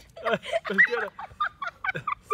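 A man and a boy laughing and giggling in short bursts.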